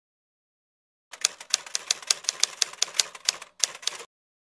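Typewriter-style typing sound effect: sharp key clicks about five a second, starting about a second in, with a brief pause near the end and a sudden stop.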